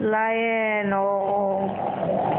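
One long, drawn-out vocal sound, held for nearly two seconds with a slowly falling pitch, over a steady low hum.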